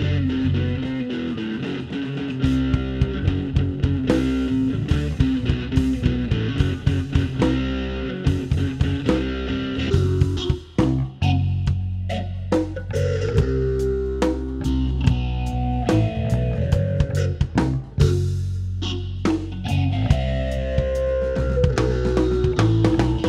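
A rock band playing live without vocals: electric guitar over bass and a drum kit. The music drops out briefly about halfway through, then comes back in.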